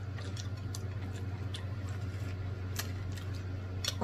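Chewing with scattered soft mouth clicks, a few per second and irregular, over a steady low electrical hum.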